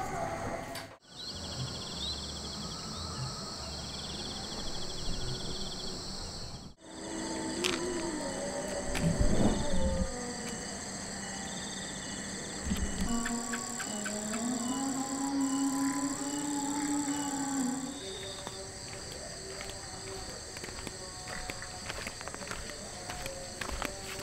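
Insects chirring steadily, with a cow mooing: a short call about nine seconds in and a long, steady one from about fourteen to eighteen seconds in.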